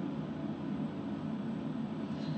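Steady low background hum of room tone, with no distinct events.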